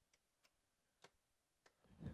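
Near silence with a few faint, sharp clicks of a small screwdriver working the backplate screws of a graphics card.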